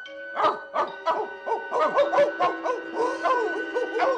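Several men imitating dogs, a run of short barks and yips that crowd together and overlap after about a second and a half.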